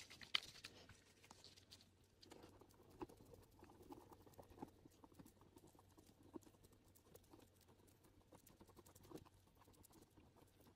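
Faint tapping and scraping of a thin wooden stir stick against a small plastic mixing cup as pigment is stirred into epoxy resin, with one sharper click just after the start.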